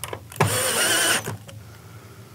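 Cordless drill/driver running a hinge screw into the aluminium storefront door frame, one short whining burst of just under a second.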